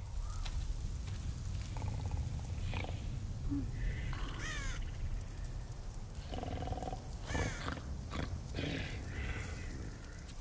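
Wind rumbling steadily through a snowy night, with a few short animal cries cutting through it. Each cry falls in pitch, one near the middle and another a little later.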